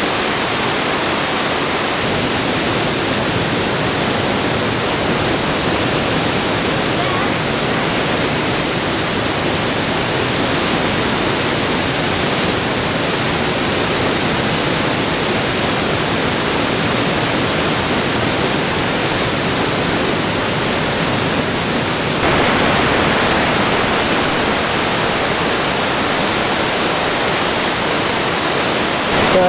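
A large waterfall's steady rush of water pouring over a wide rock ledge into the pool below. It gets slightly louder and brighter about three-quarters of the way through.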